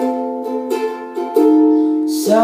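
Ukulele strumming chords with no voice over it, a louder strum and a change of chord about one and a half seconds in.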